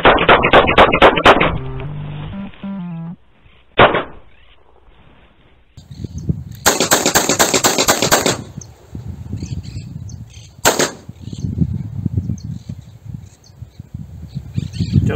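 A rapid string of about six pistol shots in the first second and a half, over background music. Later come single sharp cracks about four seconds in and near eleven seconds, and a loud burst of rushing noise lasting about two seconds.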